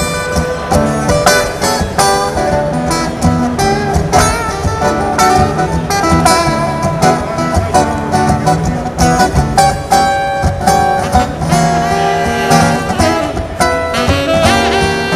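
Maton acoustic guitar amplified through a Roland AC-60 acoustic amp, playing a solo with a quick run of single picked notes over chords.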